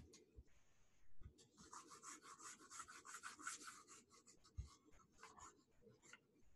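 Faint, rapid back-and-forth scratching of a stylus scrubbed over a pen tablet to erase handwritten working. It runs from about a second and a half in to about four seconds, with a shorter burst near the end and a few soft knocks around it.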